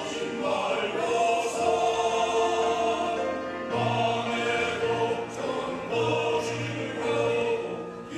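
Men's choir singing a sacred anthem in held, sustained chords, with a short breath between phrases about three and a half seconds in.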